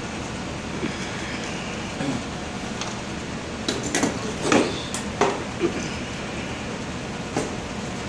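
Several sharp clinks and knocks, about halfway through and once more near the end, as a paint spray gun and metal cans are handled on a tabletop, over a steady background hiss.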